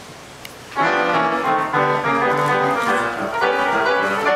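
Upright piano launching into a ragtime piece, the playing starting suddenly just under a second in after low room tone and a faint click. Quick, busy melody notes ring over a steady bass line.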